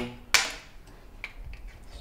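A single sharp knock as a small glass oil bottle is set down on a cutting board, fading quickly, with a faint tick about a second later.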